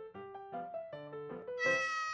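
A light background tune of short stepping notes, joined about three-quarters of the way in by a domestic cat's long, loud meow.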